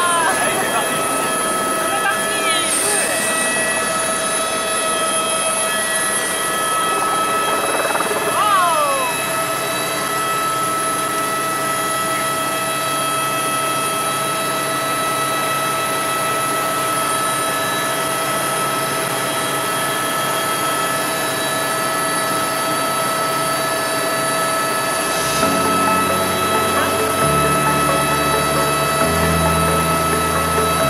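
Helicopter turbine and rotor heard from inside the cabin: a loud, steady din with a high, constant whine as the helicopter lifts off and climbs. Music comes in about 25 seconds in.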